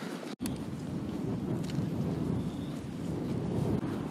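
Wind buffeting the camera microphone: a steady low rumble that sets in after a brief gap just under half a second in.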